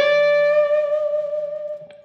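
Electric guitar playing a single string bend, pushed up from the sixth to the flat seventh of an E7 chord. The note reaches pitch right at the start and is then held steady, slowly fading over about two seconds, with a faint low note ringing underneath.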